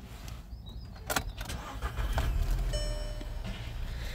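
Ignition of a 2009 Skoda Octavia switched on: a sharp click about a second in, a low hum that grows stronger about two seconds in as the instruments power up, and a short electronic chime from the instrument cluster a little after that.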